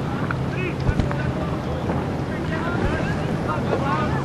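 Wind buffeting the microphone over a boat's motor running steadily, with faint distant voices calling out.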